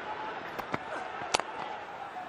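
Steady crowd noise at a cricket ground, with one sharp knock of a cricket bat meeting the ball about a second and a half in, as a yorker is dug out.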